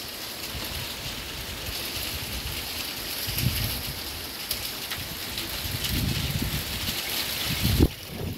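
Small hail falling on a glass patio table and balcony: a steady, dense patter of fine ticks. Low gusty rumbles swell about three and a half seconds in and again toward the end.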